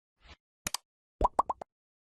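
Sound effects of an animated like button: a sharp double mouse click, then three or four quick pops, each rising in pitch, about half a second later.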